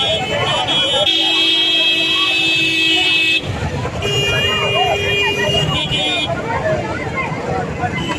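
Vehicle horns in long held blasts over crowd chatter and street traffic: one brief blast at the start, a long blast of more than two seconds about a second in, and another lasting nearly two seconds about four seconds in.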